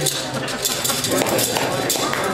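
Audience clapping that starts and builds from about half a second in, with voices over it.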